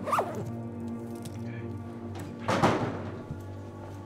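Zipper on a duffel bag being pulled shut in two strokes: a short one at the start and a longer, louder one a little past halfway. Background music plays under it.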